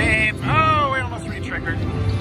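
Video slot machine's electronic tones during a free-game spin: a couple of short pitched, arching sounds about half a second apart over a steady low casino hum.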